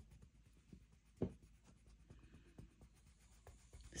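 Faint scratching of a colored pencil shading on paper, with a soft tap about a second in.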